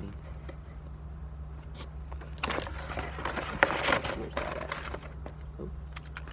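Paper and packaging rustling and crinkling as fishing-lure packs are handled and searched through, busiest in the middle with a sharp click partway through.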